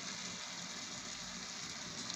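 Chicken pieces frying in a stainless-steel pot, giving a steady, even sizzle.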